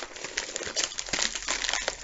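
Crinkling and crumpling of a white mailing bag being handled and squeezed, a dense run of small irregular crackles.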